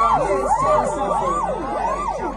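Dub siren effect over the sound system: a pitched tone swooping up and down about three times a second, each swoop overlapping the echo of the last. The deep bass of the riddim drops out as it starts.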